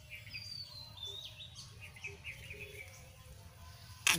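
Faint birdsong: a falling whistled note in the first second, then a series of short chirps, over a steady low rumble.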